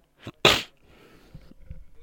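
A man coughs once, a short sharp burst about half a second in after a small catch just before it. Faint rustling follows.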